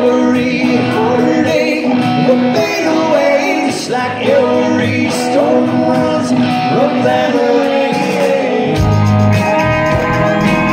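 A live country-rock band playing loudly, guitar to the fore, with a man's voice singing at times.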